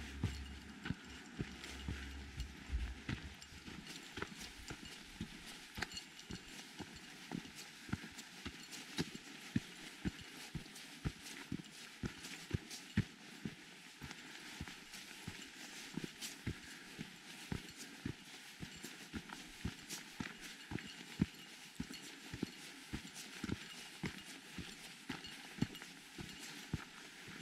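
Footsteps of a hiker walking on a dirt trail at a steady pace, about two steps a second. A low rumble fades out about three seconds in.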